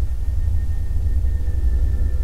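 A steady low rumble, with faint held tones slowly coming in about half a second in.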